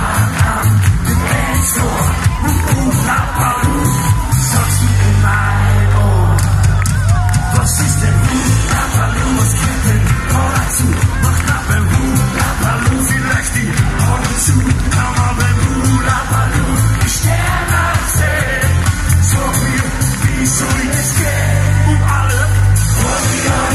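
Live concert music over a PA: a male singer singing into a handheld microphone over a band with a strong, steady bass, with crowd noise mixed in.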